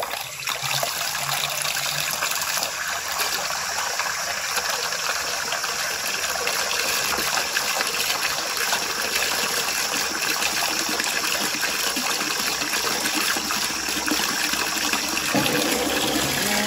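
Steady gush of water pouring from the tap into a concrete slop sink, splashing as the basin fills.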